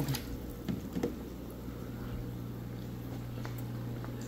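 Steady low hum of a water pump running during an aquarium water change, with faint water sounds and a few light knocks in the first second or so.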